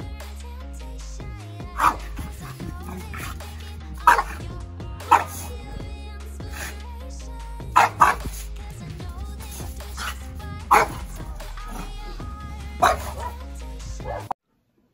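A French bulldog barking over background music: about seven short, sharp barks, spaced unevenly, louder than the music.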